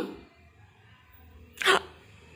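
A single short, sharp sneeze about one and a half seconds in.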